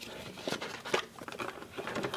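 Cardboard and paper packaging being handled: a string of small, irregular clicks and rustles, the sharpest about half a second and a second in.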